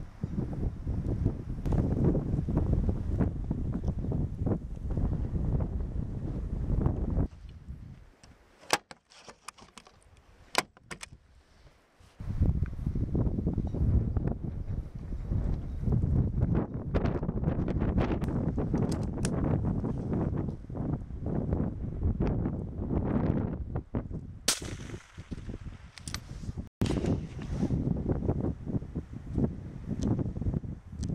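Strong wind buffeting the microphone in gusts, easing off for a few seconds near the middle. Several sharp rifle shots crack through it, two close together in the lull and a louder one with a short echo about three quarters of the way in.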